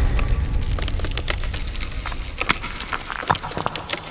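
Sound-effect clatter of broken concrete chunks and debris falling and scattering on a hard floor: irregular knocks and cracks over a low rumble, fading away.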